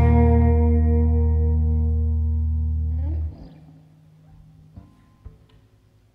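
The final chord of a song on guitars and bass, with a deep bass note underneath, ringing and slowly fading, then cut off suddenly a little past three seconds in as the strings are damped. A couple of faint clicks follow near the end.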